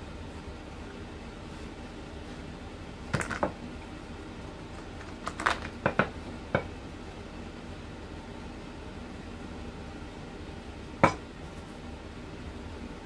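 Wooden rolling pin knocking against a wooden pastry board while pastry is rolled out, over a steady low hum. There are two knocks about three seconds in, a quick run of several around five to six seconds, and one louder knock near the end.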